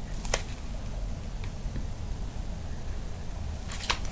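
A few soft clicks and taps of a tarot deck being handled and shuffled by hand, over a steady low room hum.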